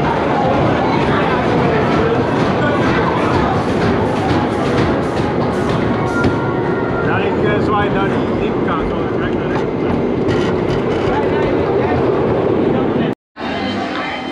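Wooden roller coaster train rattling along its track in a steady clatter of clicks, with people's voices mixed in; the sound cuts off suddenly near the end.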